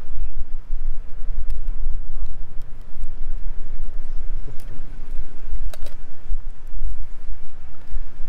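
Uneven low rumble of wind buffeting the microphone, with a few sharp metallic clicks as steel pliers work a hook out of a grouper's mouth.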